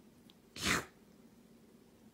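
A kitten sneezing once, a short sharp sneeze about two-thirds of a second in.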